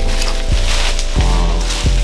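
Background music with a steady beat, a kick about every two-thirds of a second under held bass notes, over the crinkling rustle of plastic bubble wrap being pulled from a cardboard box.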